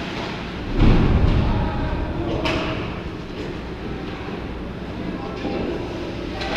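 Indoor ice rink ambience: a steady low rumble with faint, distant voices echoing in the arena, and a loud low thud about a second in.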